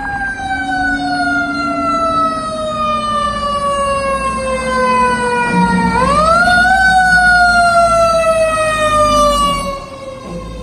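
Fire engine's mechanical siren winding down slowly, wound back up sharply once about six seconds in, then winding down again. It grows louder as the truck approaches and passes close by.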